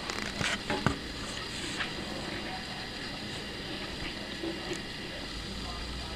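A few light clicks and taps in the first second as a small die-cast toy jeep is handled on a table, then steady faint room hiss.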